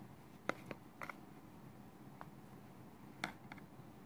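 A kitchen knife cutting butter in its tub: a few faint, scattered clicks and taps as the blade knocks against the tub, the sharpest about half a second in and another about three seconds in.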